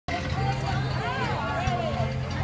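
Voices talking over a steady low engine hum.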